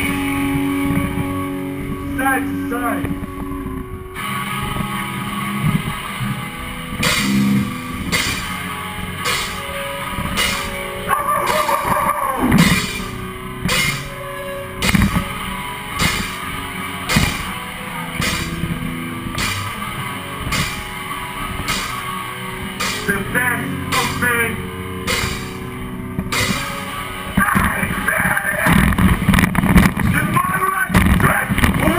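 Melodic hardcore band playing live, with distorted electric guitars, bass and drum kit. After a few seconds of full band the music thins into a sparser passage carried by evenly spaced drum hits, and the full band comes back in loud near the end.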